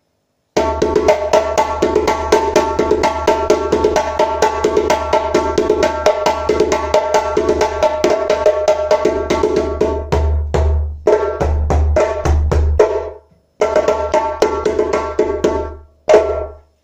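Hand-played djembe with a seasoned red oak shell and a Guinean goatskin head, loud and strong: a fast, dense run of slaps and tones, with a few deep bass strokes spaced apart about ten seconds in. The playing stops briefly near the end, then the fast strokes pick up again.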